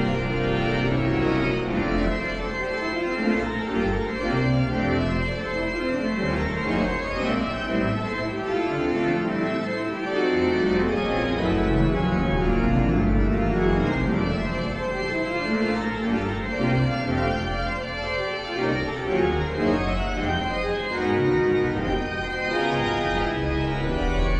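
Pipe organ playing a fast toccata: quick, dense runs of notes over deep sustained bass notes, continuous throughout.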